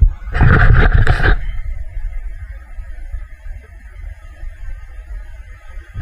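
Wind rumbling on a handheld camera's microphone, with a loud rush of wind and handling noise lasting about a second near the start, then a steady low rumble.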